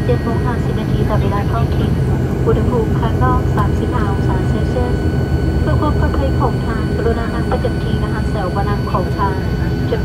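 Airliner cabin noise as a high-wing turboprop rolls along the runway after landing: a steady low rumble from the engines and wheels with a steady high whine, and passengers' voices chattering throughout.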